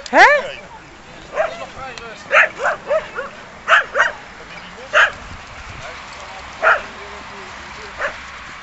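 Dogs barking and yipping in short single barks, about eight scattered irregularly over several seconds.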